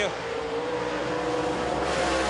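Dirt late model race car's V8 engine running hard through a qualifying lap on a clay oval. It holds a steady note that grows louder toward the end.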